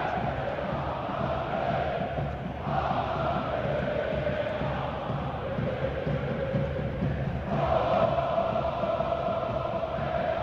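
Large football crowd singing a chant together in long held notes, a new phrase rising up about three seconds in and again near the eighth second, over the steady noise of the stands.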